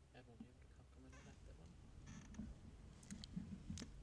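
Near silence: hall room tone with faint, indistinct off-microphone voice sounds and a couple of small clicks near the end.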